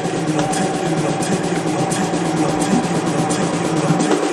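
Electronic dance music played by DJs over a club sound system, in a section carried by held, droning low synth tones with faint repeating ticks above them.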